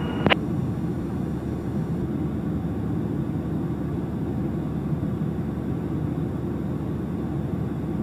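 Cessna 172 Skyhawk's piston engine and propeller heard from inside the cabin as a steady low drone while the plane taxis on the ground.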